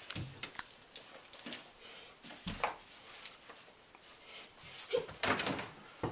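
Scattered light knocks, taps and rustles in a small room, with a denser run of clicks about five seconds in.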